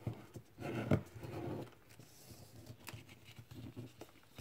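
Sheet of origami paper being folded and creased by hand, the corners brought in to the centre, with soft rustling and a few sharp crinkles. A brief low murmur is heard about a second in.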